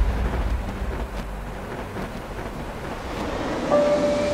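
A deep, wind-like rumble that eases off after the start and swells a little again near the end, where a steady tone comes in.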